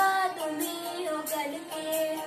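A boy singing a song, holding notes that bend in pitch, over a backing track with a regular beat.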